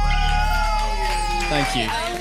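A woman's long, high-pitched cheer held for over a second, over the final chord of an electric band ringing out and fading, with more voices cheering near the end.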